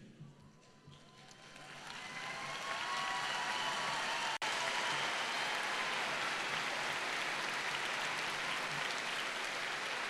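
Large crowd applauding in an arena. The clapping starts faintly about a second in, swells over the next two seconds, then holds steady, with one split-second break a little before halfway.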